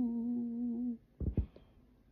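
A woman's voice, unaccompanied, holding one steady low hummed note that ends about a second in, followed by a short soft noise.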